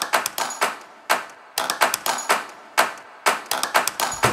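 A series of sharp percussive strikes in an uneven rhythm, about four to five a second and often bunched in quick clusters, each dying away quickly.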